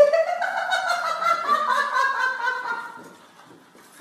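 A man's high, nasal, honk-like cry held for about three seconds: it starts suddenly, rises in pitch at first, wavers, then fades away.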